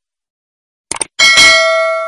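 Subscribe-button sound effect: a quick double click, then a bright bell chime with several ringing tones that starts about a second in and slowly fades.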